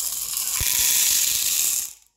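Many small silver balls poured from a plastic bowl into a plastic cup: a steady, dense clatter that cuts off suddenly as the last of them land.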